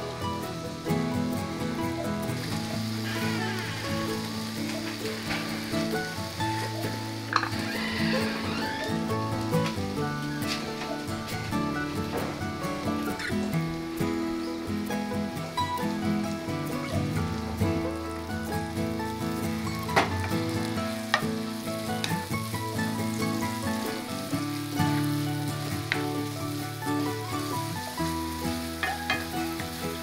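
Butter sizzling in a cast-iron skillet as apple pieces sauté in it, stirred with a wooden spoon, with a few sharp clicks, under soft background music.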